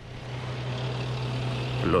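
Tank engines running as a column of tanks drives past, a steady low drone that grows gradually louder.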